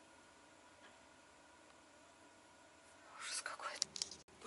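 Quiet room tone inside a truck cab with a faint steady hum, then about three seconds in a loud, breathy whisper close to the microphone.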